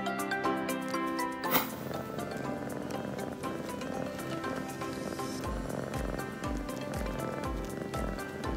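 Background music, changing about a second and a half in, with a Siamese kitten purring beneath it. A low beat comes in about five and a half seconds in, about twice a second.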